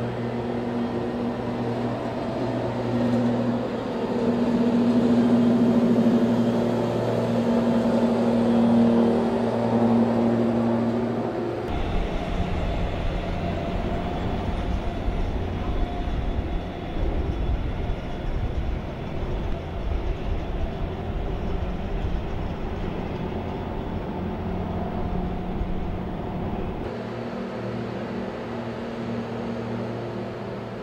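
Steady machinery drone of a container terminal, an engine hum with a clear low note that swells for a few seconds. It changes abruptly to a heavier low rumble about twelve seconds in, and changes again near the end.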